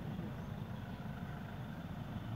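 Steady low mechanical rumble, even throughout with no distinct events.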